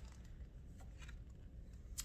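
Faint rustle of a picture-book page being turned by hand, over a low steady room hum.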